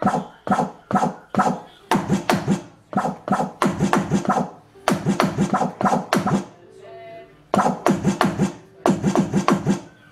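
Roland HD-1 electronic drum kit sounds from its module: a run of struck drum sounds, a few hits a second, with a short break about seven seconds in. They are played on a dual-zone pad that gives a different sound for soft and hard strikes.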